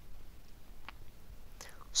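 A pause in a woman's reading voice: faint hiss, a small mouth click near the middle, and a quiet breath drawn in near the end.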